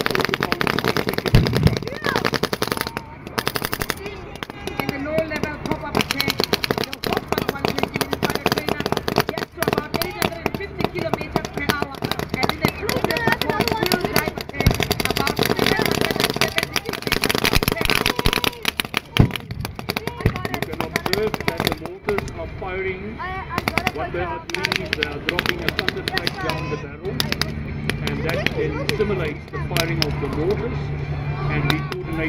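Sustained small-arms and machine-gun fire from infantry in a simulated assault: rapid, dense bursts of shots with little pause throughout. A steady low drone joins near the end.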